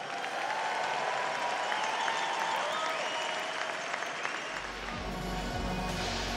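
Audience applauding. About four and a half seconds in, music with a deep bass line comes in under the applause.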